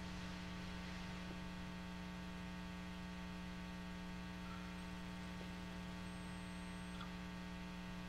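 Low, steady mains hum with a stack of evenly spaced overtones, unchanging throughout.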